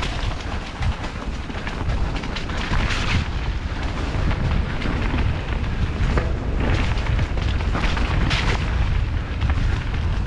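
Mountain bike riding fast down a dirt forest singletrack: a steady low rumble of wind buffeting the camera's microphone and tyres rolling over dirt, broken by quick knocks and rattles as the bike hits roots and bumps.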